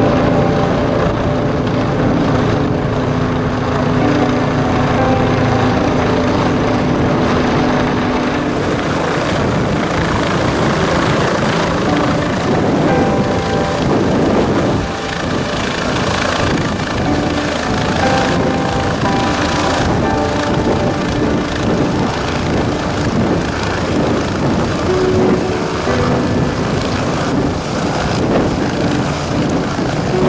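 Air ambulance helicopter's rotor and turbine engine running as it flies overhead and comes down to land. The sound turns noisier from about eight seconds in as it nears the ground.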